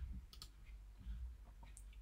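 A few faint clicks from a computer mouse and keyboard: a pair about half a second in and another near the end.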